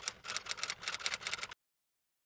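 Typewriter keystroke sound effect, a rapid run of sharp clicks as the title's letters type on. It stops abruptly about a second and a half in.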